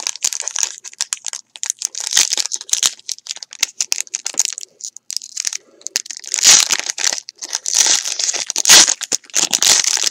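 Foil trading-card pack being torn open and crumpled by hand: irregular crinkling and tearing, loudest in bursts in the second half.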